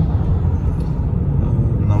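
Steady low rumble of a car driving in traffic, heard from inside the car: engine and road noise. A man's voice starts right at the end.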